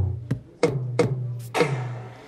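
Sampled drum sounds played by tapping a projected virtual two-drum set. There are four hits, each a sharp strike with a short low ring, and the last one rings out longest.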